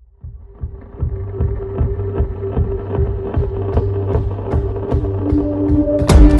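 Music fading in, a steady beat over a held bass note and a sustained higher tone, growing louder over the first second.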